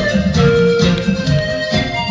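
Live band playing an instrumental passage of a Hindi song: a melody of held notes over bass and rhythm, with no singing.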